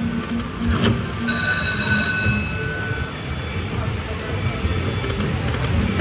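Pure Cash Dynasty Cash video slot machine running a free-game spin: electronic reel sounds with a held chime tone from about one to three seconds in, over a steady casino din.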